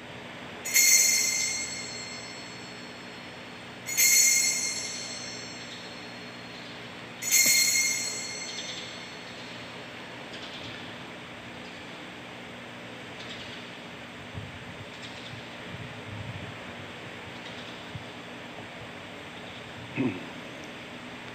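Altar bells rung three times, about three seconds apart, each ring fading over a second or so, marking the elevation of the chalice at the consecration. Faint room tone follows.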